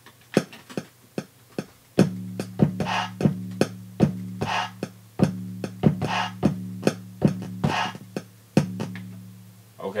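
Hip-hop drum loop played back from the Akai MPC Renaissance software: sharp percussive hits, joined about two seconds in by a sustained low bass tone. A short vocal chant sample recurs about every second and a half.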